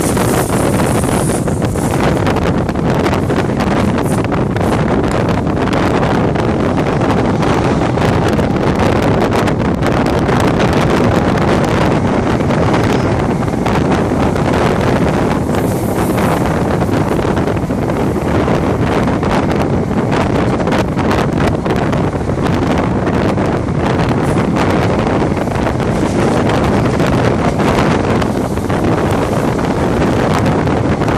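Wind buffeting a microphone held out of a moving train's open window, over the steady rumble of the train running on the track.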